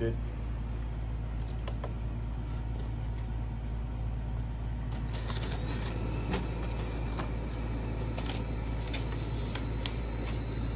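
Epson Stylus Pro 4900 wide-format inkjet printer running a nozzle check: a steady low hum with a faint high whine. About five seconds in, it is joined by a higher mechanical whine and light paper-handling rustle and clicks that carry on to the end.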